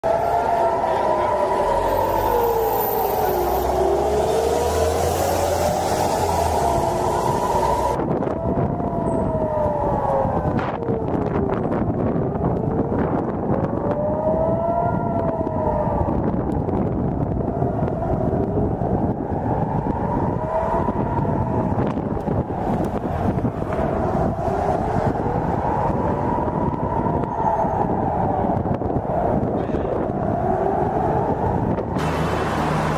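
Civil-defence air-raid sirens wailing, each rising and falling slowly in pitch, again and again, with more than one siren overlapping out of step: a missile-attack alert.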